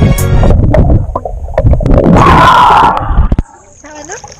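Background music laid over the footage, loud, cutting off abruptly about three and a half seconds in.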